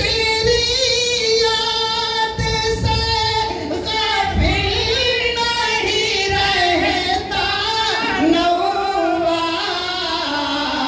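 A man singing a devotional song into a microphone over a hall PA, in long held notes that waver and bend in pitch.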